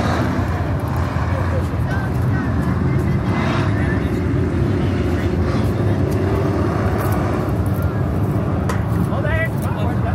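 A field of dirt-track race cars circling the oval together, their engines a steady, loud, low drone with no sharp rise or fall: the pack rolling around in its starting lineup before the green.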